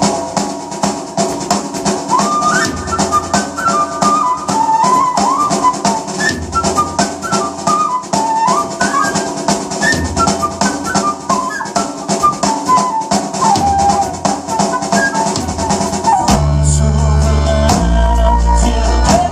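Live folk-metal band playing an instrumental passage: a flute carries a quick, winding melody over a steady rock drum-kit beat. About sixteen seconds in, heavy bass and distorted guitars come in and the sound gets much fuller and louder in the low end.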